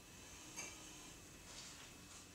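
Very quiet room with two faint, soft hisses of air, about half a second and a second and a half in, from a non-invasive ventilator blowing through a full-face breathing mask.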